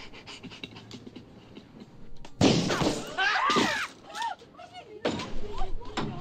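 Brawl sound from a 1980s TV comedy: after a couple of quiet seconds, loud shouts and grunts with the thuds of a struggle break out about two and a half seconds in, and again about five seconds in.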